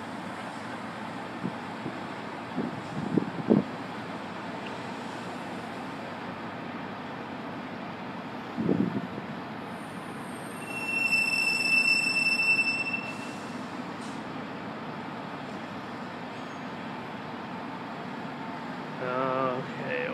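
Steady background rumble of a freight train drawing near but not yet in view, with a few short knocks and, about eleven seconds in, a high steady squeal lasting a couple of seconds, like wheel flanges squealing through a crossover.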